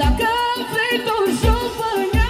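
Live dance music with a woman singing a wavering, ornamented melody over keyboard backing. The steady bass-drum beat drops out just after the start and comes back about a second and a half in.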